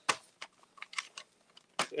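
Sublimation transfer paper being handled and pressed flat by hand over a fabric face mask: a scatter of short papery crinkles and taps.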